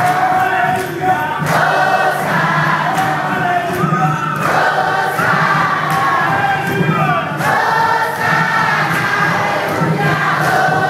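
A large congregation singing a praise song together, many voices at once and loud throughout.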